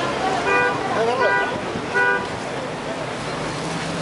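A vehicle horn beeps three times in short, even toots, each under a quarter second, over voices and road traffic.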